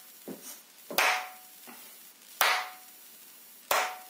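Hand claps keeping a slow, even beat: three loud claps about a second and a half apart, each held for two quarter-note beats as a half note, with a fainter tap on the beat between the first two.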